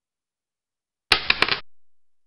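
A short inserted sound effect about a second in: a half-second noisy burst with three quick sharp hits, cut off abruptly, between otherwise dead silence.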